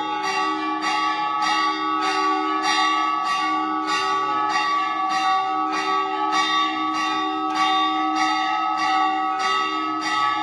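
Temple bells ringing continuously, struck about twice a second, each strike ringing on into the next.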